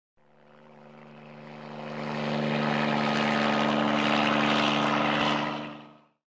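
Quadcopter drone propellers buzzing with a steady, multi-tone hum. The sound fades in over the first two seconds, holds level, and fades out near the end.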